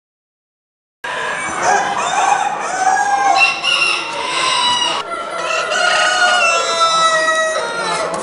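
Chickens in show cages: several roosters crowing over one another, with clucking between the crows. The sound starts suddenly about a second in.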